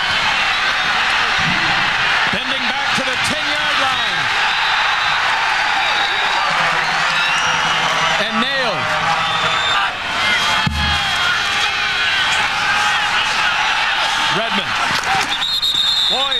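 Stadium crowd noise at a college football game: a steady din of many voices carried on the broadcast sound, dipping briefly about ten seconds in.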